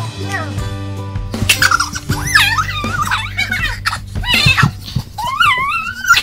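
Song backing music continues under children's high-pitched squeals and shrieks, which start about a second and a half in and come in rising and falling bursts.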